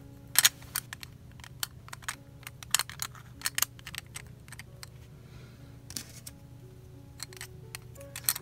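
Hard clear plastic crystal-puzzle pieces clicking and tapping against each other as they are handled and fitted together: a string of sharp, irregular clicks, the loudest about half a second in. Soft background music plays underneath.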